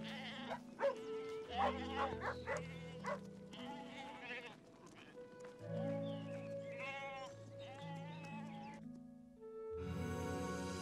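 A flock of sheep bleating, several wavering calls bunched together about a second or two in and again around seven seconds, over soft sustained background music.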